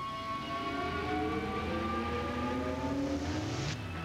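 Heavy truck engine pulling under load, heard from inside the cab, its pitch climbing slowly as it gains speed. The sound cuts off abruptly just before the end.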